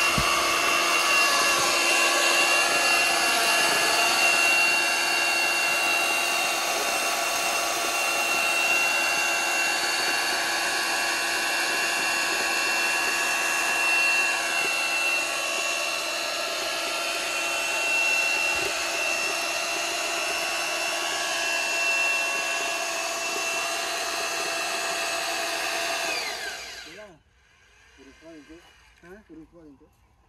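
Heavy electric drill driving a reduction gearbox to screw a steel pile into the ground, running steadily under load with a high gear whine. Near the end it is switched off and winds down within about half a second.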